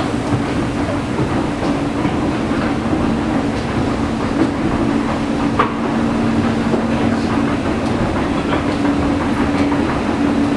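Escalator running, heard from on the moving steps: a steady mechanical hum over a low rumble, with a few faint clicks from the steps.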